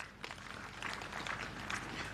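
Scattered applause from the audience: many light claps overlapping, steady and fairly faint.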